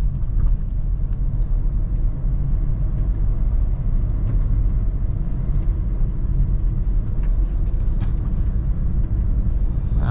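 Honda Brio's engine and road noise heard from inside the cabin as the car accelerates in third gear: a steady low rumble.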